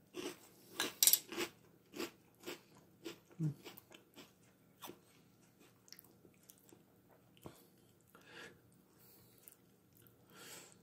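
Crunchy Boo Berry cereal pieces being chewed, close to the mouth: a run of short crunches, about two a second for the first few seconds, then thinning out to a few faint ones.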